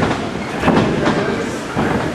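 Thumps and rumbling from people moving on a wrestling ring's boards, a few heavier thuds about a second apart.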